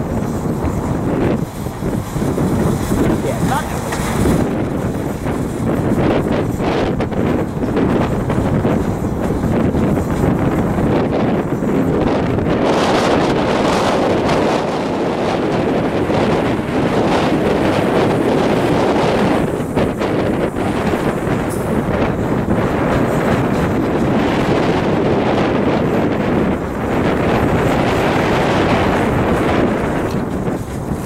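Strong wind buffeting the microphone, over the rumble of a long freight train's cars rolling past.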